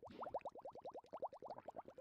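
Faint bubbling sound effect: a quick run of short rising blips, about fifteen a second.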